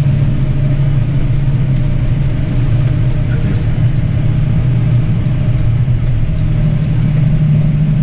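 Massey Ferguson tractor's engine running steadily under load, heard from inside the cab, with a low even drone as it drives a flail topper through grass.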